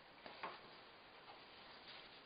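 Near silence with a few faint ticks, two close together about half a second in and a weaker one later, as a folded paper towel is lifted off a freshly varnished sheet and handled.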